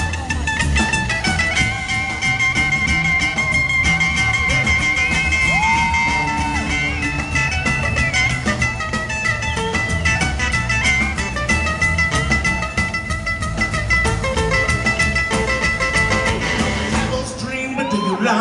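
Live rock and roll band playing an instrumental break: an electric guitar lead with long held notes and a few bent, sliding ones over upright bass, strummed acoustic guitar and drums.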